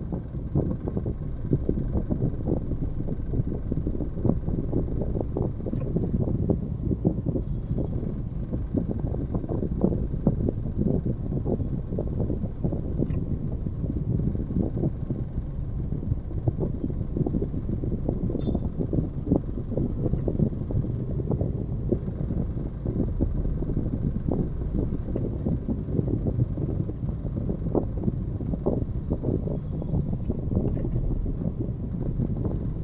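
Road and engine noise heard inside a car's cabin while driving in slow traffic: a steady low rumble with a constant rough crackle over it.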